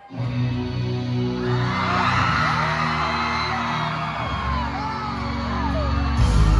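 Live indie rock band starting a song suddenly with sustained low chords, while the crowd screams and whoops over the music.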